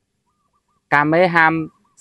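Silence for almost a second, then a voice speaking one short phrase at a fairly level pitch for under a second.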